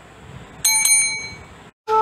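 Bell sound effect on a subscribe-button animation: two quick bright rings about a fifth of a second apart, ringing out for about a second. Music starts right at the end.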